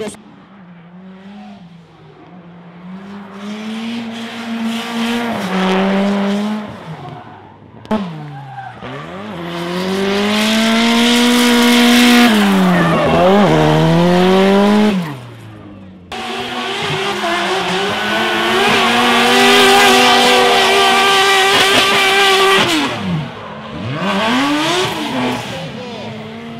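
Drift cars' engines held at high revs and swooping up and down under throttle, with tyres squealing and skidding. The sound comes as three separate passes with abrupt cuts between them, about 8 and 16 seconds in. It is quieter at the start and loudest in the middle and later passes.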